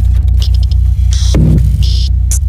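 Logo-intro sound design: a loud, deep, throbbing electronic drone with short crackling digital glitch bursts several times, and a brief low downward swoop about halfway through.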